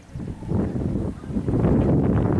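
Wind buffeting the camera microphone: a loud, irregular low rumble that picks up just after the start and grows louder toward the end.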